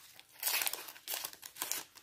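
Wrapper of a Panini football-sticker packet crinkling as it is torn open and the stickers are slid out, in two short spells of rustling.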